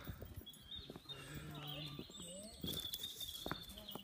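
Faint distant voices, with the small scuffs and knocks of someone walking while holding a phone.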